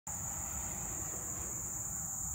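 Steady chorus of field crickets, a continuous high-pitched buzz that does not change, over a faint low rumble.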